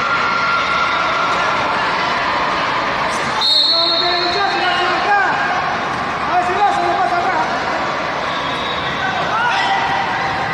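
Indistinct shouting from coaches and spectators echoing around a wrestling hall, with a short high referee's whistle blast about three and a half seconds in and a few dull thuds from the mat.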